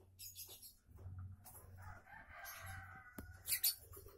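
A rooster crowing faintly, one long crow beginning about a second and a half in, with a few short sharp clicks toward the end.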